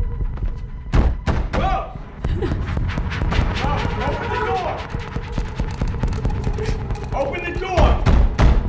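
A fist pounding on a wooden door, with a quick run of loud thuds about a second in and scattered knocks after, over a steady held drone of film score.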